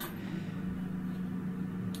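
Oshkosh Striker ARFF fire truck running while its boom is raised, heard inside the cab as a steady low hum.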